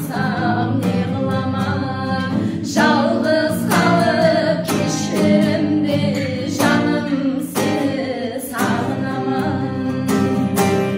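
Two women singing together live, accompanied by a strummed acoustic guitar.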